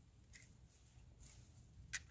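Near silence with a few faint clicks and one sharper click near the end, typical of small metal parts being handled.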